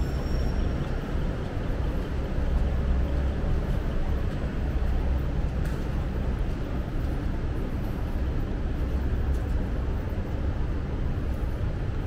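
Steady city street ambience: a continuous low rumble of traffic with no single event standing out.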